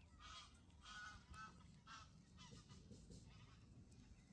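Greylag geese honking faintly: a run of about half a dozen short calls over the first two and a half seconds, growing sparser after.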